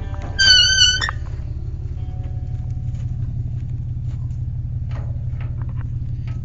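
Truck engine idling with a steady low rumble. About half a second in comes one short, high, steady squeak lasting just over half a second, the loudest sound here.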